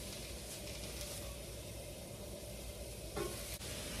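Low, steady sizzle of food cooking on hot griddles: nopal cactus paddles on a ridged grill pan and masa huaraches on a flat comal.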